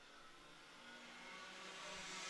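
Faint racing go-kart engines, Rotax Mini Max two-strokes, running at speed and growing slowly louder as the karts approach.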